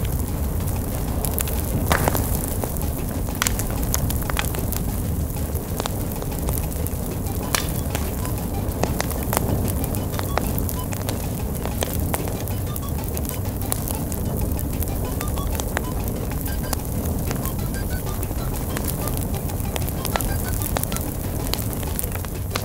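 Fire crackling: a steady rush with frequent sharp crackles and pops throughout.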